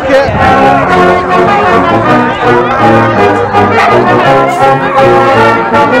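Brass band music: several brass instruments playing a tune in held notes over a low bass line.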